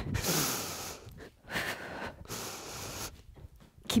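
A woman breathing hard during a stepping squat exercise: three noisy breaths close together, the first the longest.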